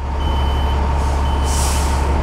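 Fire truck's diesel engine running with a steady low rumble while its reversing alarm beeps about once a second, each beep about half a second long. A short burst of air hiss comes about halfway through.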